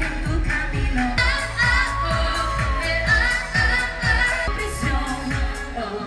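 A live pop song: a woman sings into a handheld microphone over a steady kick-drum beat. The beat cuts off right at the end.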